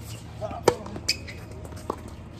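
Tennis ball being struck with rackets and bouncing on a hard court during a rally. There are several sharp pops, the loudest about two thirds of a second in and a smaller one near the end.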